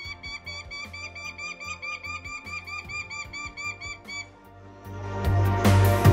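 Prairie falcon calling a rapid run of sharp kek notes, about five a second, that stops about four seconds in. Background music runs under it and swells louder near the end.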